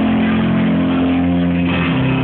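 Live rock band playing, with a chord and a deep bass note held ringing steadily until they change near the end.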